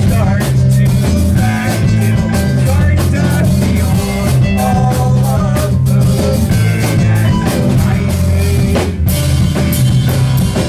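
A live rock band playing loud: a drum kit keeping a steady beat under bass and guitar, with a heavy low end, heard from the back of a crowded room.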